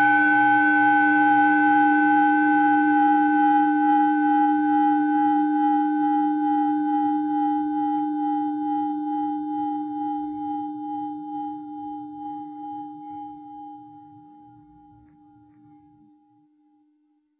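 A struck metal bell, of the singing-bowl kind, ringing out in a few steady tones and fading away slowly, dying out near the end. It is sounded as the answer to "Reality is this".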